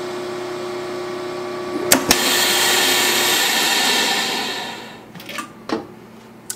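VacMaster VP215 chamber vacuum sealer's pump running with a steady hum. About two seconds in there is a sharp click, then a loud rush of air back into the chamber that fades away over the next few seconds: the vacuum is released and the jar lids are drawn down tight. A few clicks follow near the end as the lid is lifted.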